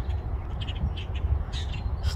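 A flock of birds perched in a bare tree calling: short, scattered calls, several in quick succession, over a steady low rumble.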